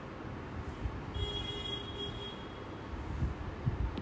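Low background rumble with a few soft knocks. A little over a second in, a steady high tone sounds for about a second, like a beep.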